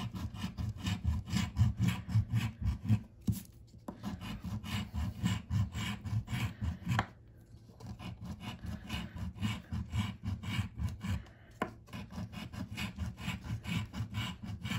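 A coin scratching the latex coating off a lottery scratch-off ticket: rapid back-and-forth strokes, broken by a few brief pauses.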